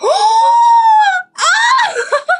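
A young woman's high-pitched screams of delight: one long shriek, then a shorter rising one near the end, tipping into giggles.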